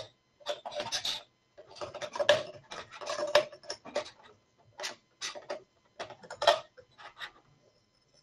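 Hand screwdriver tightening the screw of a metal mini clamp onto an aluminium mounting-system sample: a run of irregular clicks and scrapes of metal on metal.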